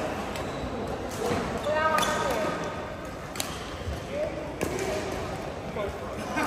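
Badminton rackets striking a shuttlecock in a rally, about five sharp clicks spaced roughly a second apart, echoing in a large sports hall over a background of voices.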